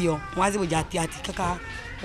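Speech only: a woman talking in a lively, sing-song voice.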